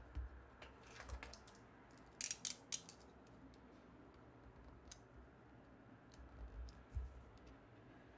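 Faint paper handling and cutting on a cutting mat: a sheet of paper is laid down with a cluster of sharp crackles about two seconds in, then a blade is drawn through it with scattered small clicks, and a few dull knocks come near the end.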